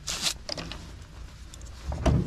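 A short scraping rustle as a serrated fillet-knife blade is slid out of a hard plastic knife case, followed by a few faint clicks of handling.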